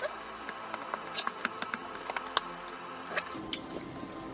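Hands handling a black cardboard box and working at its lid to open it: a scatter of light, irregular clicks and taps from fingers on the cardboard.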